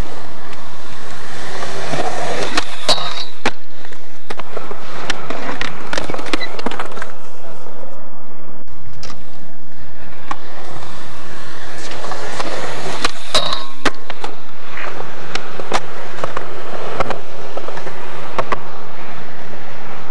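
Skateboard wheels rolling over concrete at close range, loud and continuous, with frequent clacks and knocks from the boards; the sound breaks off briefly about halfway through.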